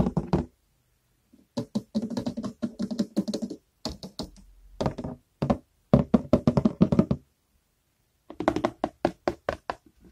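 Fingers tapping on hard objects in quick runs of many taps, broken by short pauses.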